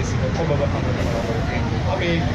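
A man speaking into a handheld microphone in a language other than English, over a steady low rumble.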